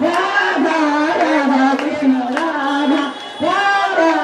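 A voice singing a devotional song in long, wavering held notes, breaking off briefly for breath about three seconds in.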